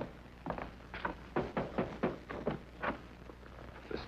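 A run of short, irregular knocks, several a second, like hooves or footsteps on hard ground.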